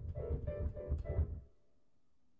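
Guitar strummed in a short run of quick chord strokes, tapping out the rhythm of the phrase that is to be sung. It stops about a second and a half in.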